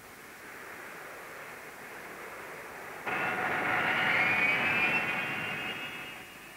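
Jet airliner engine noise: a steady rushing hiss, then about halfway through it jumps louder, with a high whine that rises slightly in pitch.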